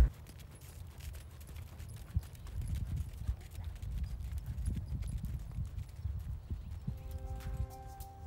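Hoofbeats of a Standardbred horse trotting on sand arena footing, as a run of dull, uneven thuds. Music with held notes comes in near the end.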